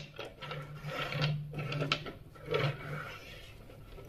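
Small wooden toy train cars being pushed and rolled across a wooden tabletop, their wheels rattling and the cars knocking together, in several short irregular bursts with a few sharp clicks.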